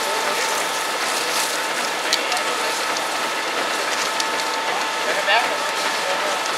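Burning building: a steady hiss with scattered sharp crackles and pops, over a faint steady high whine.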